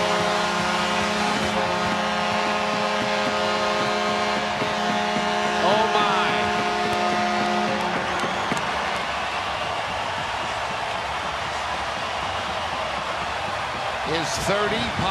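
Arena goal horn sounding a steady multi-tone chord over a cheering crowd, marking a home-team goal; the horn cuts off about eight seconds in, leaving the crowd noise.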